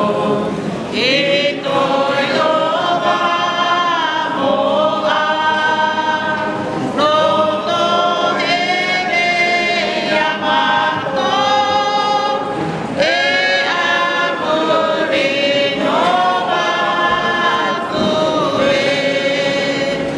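A small Polynesian mixed group of men and women singing a worship song together without instruments, in several voice parts at once, with long held notes and sliding pitches.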